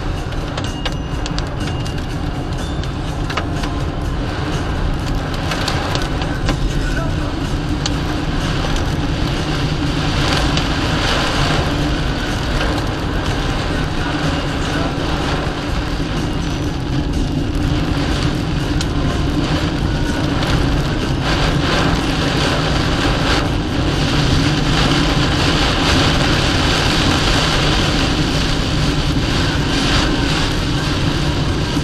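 Heavy rain hitting a car's windscreen, with the wipers working, over steady engine and road noise inside the moving car's cabin. The rain grows a little louder in the second half.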